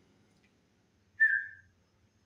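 A single short whistle-like tone about a second in, lasting about half a second and dropping slightly in pitch.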